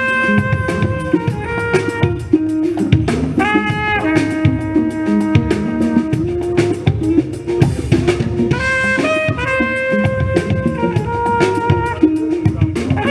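Live jazz-funk band playing: a flugelhorn carries a melody of held notes over drum kit, bass, guitar and congas.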